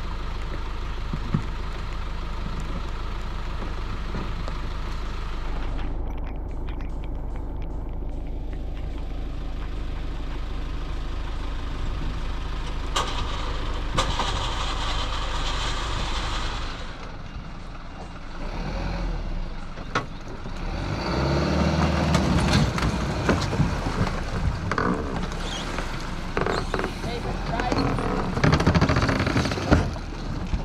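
A vehicle engine running steadily, with a low hum. Indistinct voices and louder activity come in during the later part.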